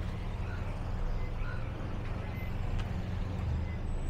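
Busy street ambience: a steady low rumble of motor traffic.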